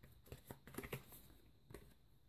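Faint shuffling of a deck of tarot cards by hand: a few soft, quick flicks and clicks.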